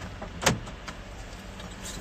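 Steady low hum inside a parked car, with one sharp click about half a second in, while staff work on the car's ajar trunk.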